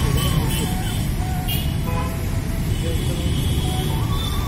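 City road traffic: steady rumble of passing cars' engines and tyres, with people's voices mixed in.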